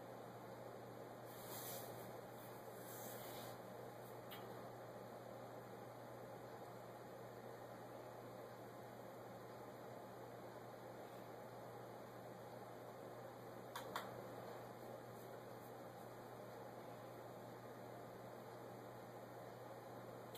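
Near silence: quiet room tone with a steady low hum and faint hiss, broken by a couple of faint rustles early on and a single faint click past the middle.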